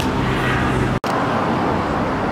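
Steady road traffic noise on a city street, with a low engine hum in the first second. The sound cuts out for an instant about halfway through.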